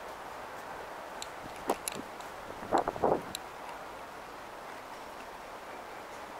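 Steady outdoor city background hum, with a few sharp clicks a little under two seconds in and a brief cluster of louder knocks about three seconds in.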